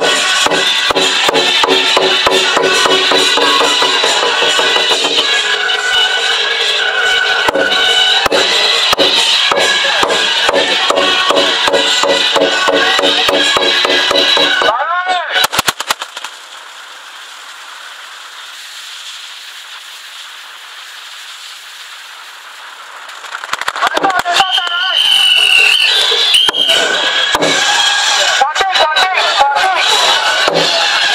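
Procession drum with ringing percussion and rapid sharp cracks for about the first half. The sound then drops to a quieter steady background for several seconds, and loud, rapid firecracker cracks return near the end, typical of a string of firecrackers set off for the Tiger Lord.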